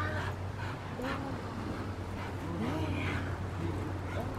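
A Rottweiler playing tug on a toy, giving a few short, rising-and-falling vocal sounds, over a steady low hum.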